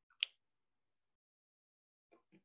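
A single short, sharp click about a quarter of a second in.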